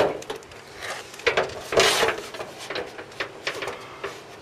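Riding mower's painted metal hood being lifted and tilted open on its hinge: a few knocks and a scraping rub, the loudest about two seconds in.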